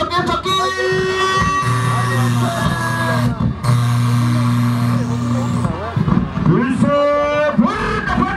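Music with long held low notes in two stretches of about two seconds each, and a voice over it at times.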